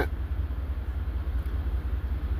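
A low, steady rumble with nothing else over it.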